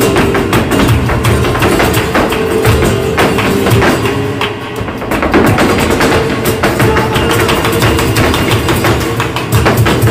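Live flamenco: a dancer's rapid footwork strikes, heels and toes hammering the stage, over acoustic flamenco guitar accompaniment, easing briefly about halfway through.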